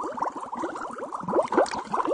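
Water bubbling and plopping: a quick, irregular run of small drop-like pops, each rising in pitch.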